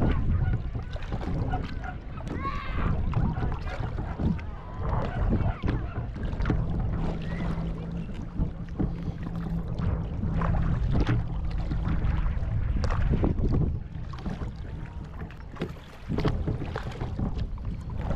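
Water splashing and slapping against a kayak's hull as it moves over choppy water, with wind rumbling on the microphone.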